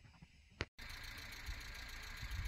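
Near silence, then after a single click a faint, steady outdoor background noise with a low rumble that swells now and then.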